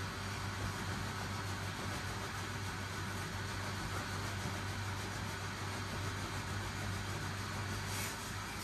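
Steady hum and rush of air from the small battery-powered blower fan that keeps an inflatable robot costume inflated, running without a break.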